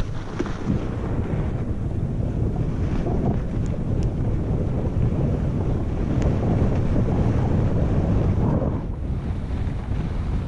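Wind buffeting the camera microphone as a fat bike speeds downhill on snow: a steady low rumbling roar that holds through the run, with a few faint clicks.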